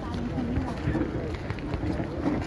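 Indistinct voices of people talking nearby over a steady low outdoor rumble.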